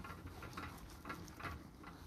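A whiteboard being wiped clean: several faint, soft rubbing strokes at irregular intervals.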